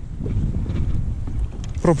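Wind buffeting the microphone: a rough, uneven low rumble over choppy water, with a brief shout near the end.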